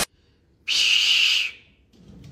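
A person shushing: one steady "shh" lasting under a second, about halfway in, after a brief click right at the start.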